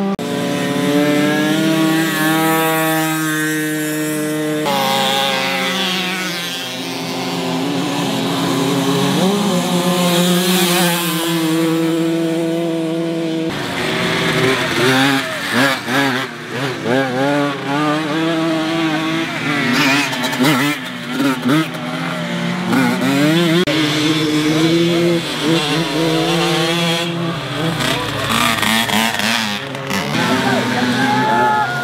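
Small two-stroke moped (Mofa) engines revving through a muddy off-road course, pitch climbing and dropping as the riders open and close the throttle. In the second half several bikes overlap.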